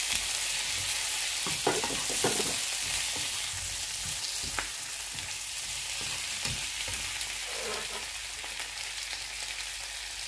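Whole shell-on shrimp sizzling in butter and garlic in a nonstick frying pan, stirred with a slotted spatula that knocks against the pan a few times. The sizzle is loudest at first and eases a little.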